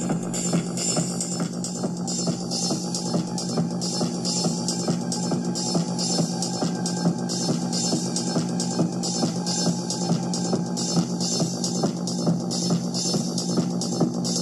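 Electronic techno-style music from a hybrid synth and drum-machine rig: a steady drum beat from a 909 drum kit over a sustained low synth tone.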